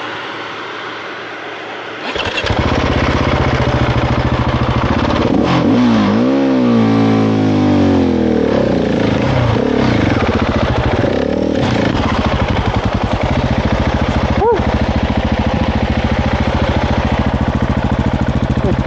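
Husqvarna 701 Enduro's single-cylinder four-stroke engine starting about two seconds in, revved up and down a few times, then running at a steady pace.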